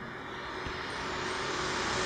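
Steady background noise of the room picked up by an open microphone: an even hiss and low rumble that grows slowly louder.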